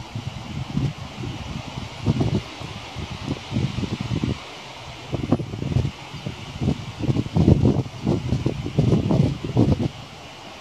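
Thunder rumbling in one long, uneven roll of low swells, growing heavier in the second half.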